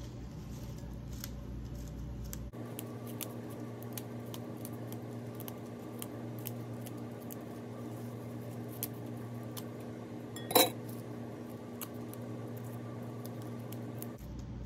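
Parsley leaves being plucked off their stalks by hand, with faint snaps and ticks and one louder sharp snap about ten and a half seconds in, over a steady low hum that shifts in tone about two and a half seconds in.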